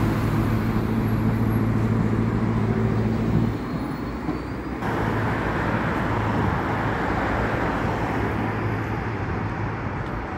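City street traffic: a motor vehicle's engine runs with a steady low hum for about the first three and a half seconds, then stops being heard, and cars pass with a steady rush of tyre and engine noise.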